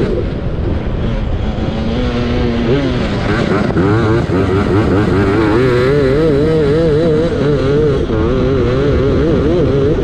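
Racing lawnmower's engine running hard, its pitch wavering quickly up and down as the revs rise and fall while it is driven round the grass track; it holds one pitch briefly about two seconds in, then revs up again. Wind rumble on the onboard microphone underneath.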